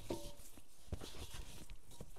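Gloved hands kneading and turning a ball of yeast-roll dough in a stainless steel mixing bowl, working in the dry flour: irregular soft knocks and rubbing against the bowl.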